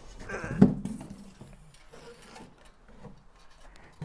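Handling noise as a patio heater's metal burner and reflector assembly is lifted out of a cardboard box: a short bump about half a second in, then faint rustling and small knocks.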